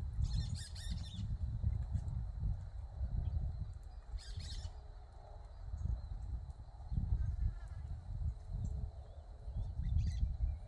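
Small birds chirping in short bursts at a feeder: a cluster about a second in, another around four seconds, and fainter calls later, over a low rumble.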